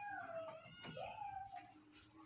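Two faint, drawn-out animal calls, one right after the other, each rising and then sliding down in pitch. A small click falls between them.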